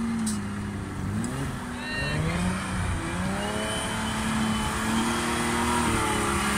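Unimog 404 S trial truck's engine pulling under load up a steep dirt slope. Its revs sag about a second in, rise over the next couple of seconds, then hold steady at a higher pitch.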